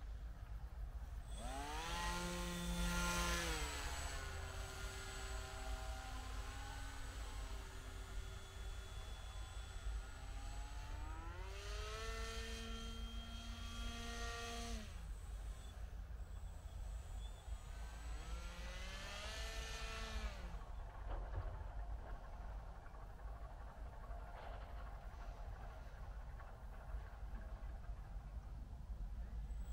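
Small motor and propeller of an RC paramotor throttled up three times: each time a whine rises in pitch, holds for a few seconds, then falls away as the throttle is cut. A steady low rumble runs underneath.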